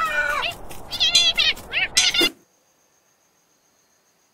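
Cartoon penguin character's voice: a quick run of short, high, squeaky meow-like cries, each bending up and down in pitch, cut off abruptly a little over two seconds in.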